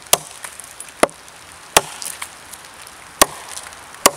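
A CRKT Ma-Chete machete with a 1075 steel blade chopping into a log with four sharp strikes at uneven intervals. The owner finds the blade lacks forward weight for chopping.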